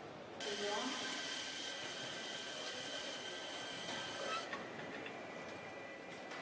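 Car assembly line noise with a loud, steady hiss that starts about half a second in and cuts off sharply about four seconds later.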